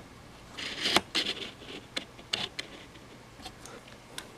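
A screwdriver prying at the seam of a small plastic camcorder case: scraping and a series of sharp plastic clicks as the snap-fit shell is worked apart, the busiest stretch about a second in.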